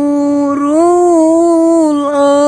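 A voice holding one long drawn-out note, rising slightly in pitch about half a second in and then held steady.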